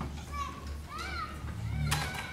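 Children's high voices chattering, rising and falling in pitch, over a steady low hum, with a sharp click just before the end.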